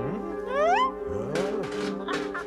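Cartoon cat vocal effect over background music: a sharply rising yowl about half a second in, followed by lower, bending cat cries and a hiss-like burst.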